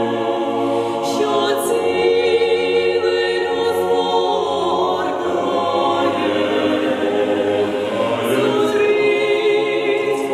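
Mixed choir of women's and men's voices singing unaccompanied in a church, holding slow sustained chords, with a few short hissing consonants standing out.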